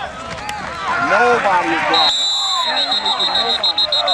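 Players and spectators shouting at a football play. About halfway through, a high shrill whistle sounds one held blast, then a quick run of short toots, typical of an official whistling the play dead after a tackle.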